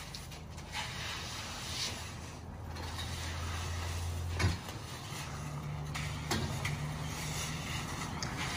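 An engine running steadily at a low pitch, stepping up to a somewhat higher pitch about halfway through, with a short knock just before the change. Rakes and screeds scrape faintly over wet concrete.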